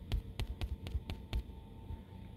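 A quick run of light taps, about eight in two seconds, on a device screen as drawn annotation lines are undone one by one.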